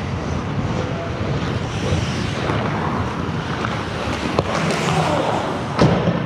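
Ice hockey play on an indoor rink: a steady wash of noise from skates on the ice, with a sharp knock about four and a half seconds in and a louder thud near the end.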